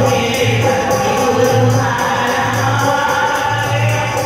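Devotional bhajan kirtan: a group of women singing together in unison to a harmonium, with a steady percussion beat underneath.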